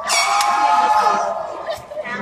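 A loud, drawn-out, high-pitched cheering scream from a spectator in the stands, lasting about a second and a half before it fades.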